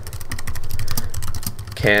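Rapid typing on a computer keyboard: a quick, dense run of keystroke clicks over a low steady hum.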